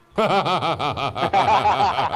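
A man laughing in a run of quick chuckles that starts a moment in.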